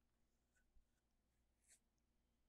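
Near silence: room tone, with two very faint ticks about a second apart.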